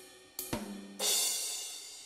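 Sampled drum-kit sounds from the SGM-V2 soundfont, previewed as notes are clicked into LMMS's piano roll. A short hit about half a second in is followed about a second in by a crash cymbal that rings and fades. The crash sounds a little bit too loud.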